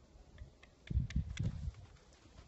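Hooves of a young Quarter Horse stallion thudding on dirt as he shifts his feet, a quick cluster of dull thuds about a second in, with a few faint clicks just before.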